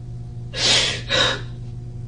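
A woman crying, drawing two short gasping breaths, the first about half a second in and the second just after a second in.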